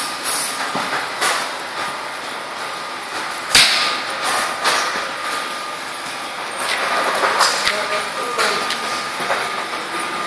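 Golf iron striking a ball off a driving-range mat: one sharp crack about three and a half seconds in, the loudest sound, over a steady background hiss with fainter clicks.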